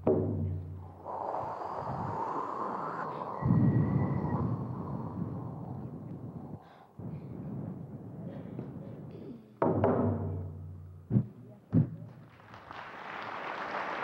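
Frame drum struck with a ringing low beat at the start, then, after a long stretch of noise with no beats, struck again about ten seconds in, followed by two sharp beats less than a second apart.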